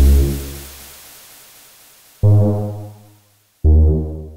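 IDM electronic music: a deep, low note rich in overtones fades away, then a second low note sounds about two seconds in and dies off, and a third begins near the end.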